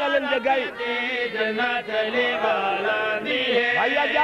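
Male voice chanting a Punjabi devotional qasida in long, held melodic lines.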